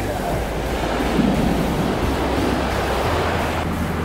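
Ocean surf breaking and washing up the sand in a steady rush, with wind rumbling on the microphone.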